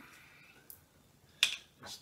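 A cork stopper pulled out of a triple sec bottle with a single short pop about one and a half seconds in, after a faint tick.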